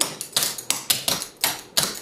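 Metal taps on clogging shoes striking a wooden floor in a quick, even run of sharp clicks, about four to five a second, as the dancer does a push step to the right.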